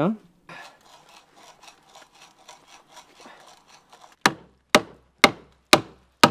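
Faint, rhythmic scraping of wood, then about four seconds in four sharp knocks half a second apart: a wooden peg being driven into a log wall with a small axe.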